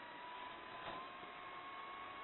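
Faint steady hiss with a thin, high whine that holds its pitch, creeping slightly upward, and a single soft tick about a second in.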